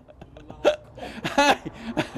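A man laughing helplessly in short separate bursts, with a loud high-pitched whoop of laughter about one and a half seconds in.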